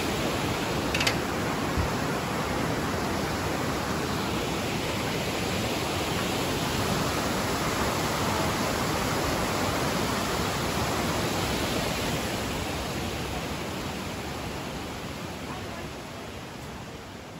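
Steady rushing of the Mossman River's rapids over boulders, an even wash of water noise that fades away over the last couple of seconds.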